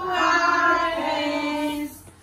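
A group of young children and women singing together in long held notes that step down in pitch about a second in, breaking off just before the end.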